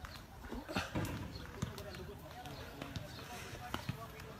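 Faint voices of people talking in the background, with a few sharp knocks scattered through.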